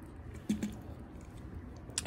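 Faint clicks and handling noise from a small Quarky coding robot as its power switch is pressed, the clearest click about half a second in.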